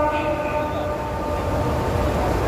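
The end of a long held note of the Maghrib call to prayer (adhan) sung over loudspeakers with echo, fading out about halfway through. A steady crowd-and-wind noise remains under it.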